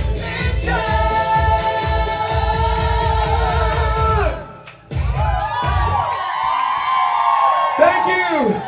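Singer holding a long note over a pop backing track with a steady dance beat. After a brief dip just past four seconds, the beat drops out and the voice finishes with a run of sliding, bending notes, closing out the song.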